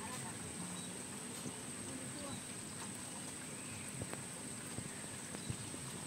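Occasional faint snaps and rustles of cherry tomatoes being picked off the vine among the leaves, over a steady background hiss with a thin, constant high tone.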